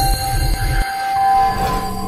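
Record-label audio logo sting: a deep pulsing rumble that cuts off suddenly just under a second in, followed by a held chord of steady tones.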